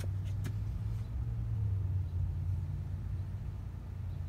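Steady low rumble of a running engine or machine, with a few faint clicks about half a second in.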